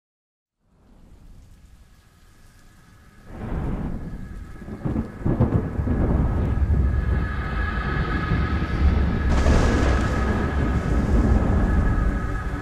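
Thunderstorm ambience: steady rain with rumbling thunder, fading in from silence and swelling loudly about three seconds in.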